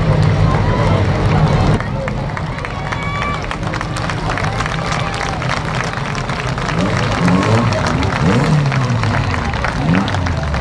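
Banger race car's engine running loudly for about the first two seconds, then dropping away abruptly to a quieter mix of voices and background music.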